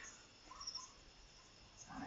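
Near silence: faint room tone, with a couple of faint short blips about half a second in.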